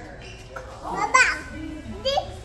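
A young child's voice: a short, loud, high-pitched call about a second in, over a low murmur of room sound.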